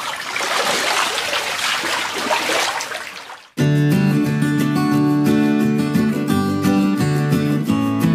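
Water splashing and dripping as a wet cloth rag is dunked and wrung out in shallow pond water, fading out after about three and a half seconds. Then acoustic guitar music starts suddenly and carries on.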